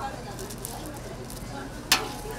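A single sharp knock near the end: a knife set down on a cutting board while fish-cake paste is shaped by hand. Faint voices are heard throughout.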